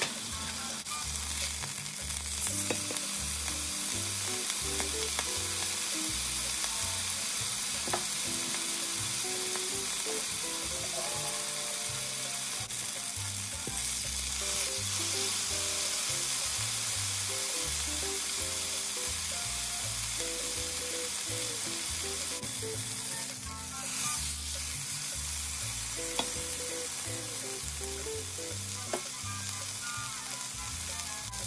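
Beef joint searing in hot oil in a nonstick frying pan: a steady sizzle of the fat.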